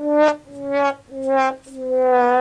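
Sad trombone sound effect: four descending brass notes, the last one held longer, the comic 'wah-wah-wah-waaah' that marks a letdown, here that the mask did nothing.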